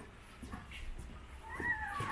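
A short high-pitched animal cry, arching up and then down, about one and a half seconds in, over faint background.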